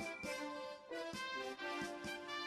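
Quiet instrumental background music, a few held notes that change pitch every half second or so.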